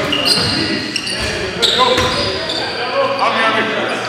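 Basketball game in play: a ball bouncing on the hardwood court, short high sneaker squeaks, and players' voices.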